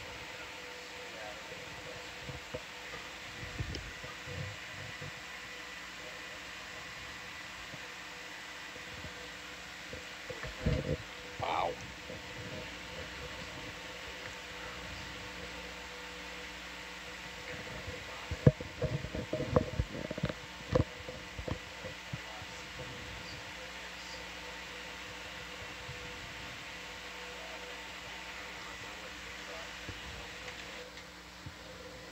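Steady electronic hum of control-room equipment with a few faint fixed tones, broken by brief muffled knocks and indistinct murmurs about ten seconds in and again around twenty seconds in.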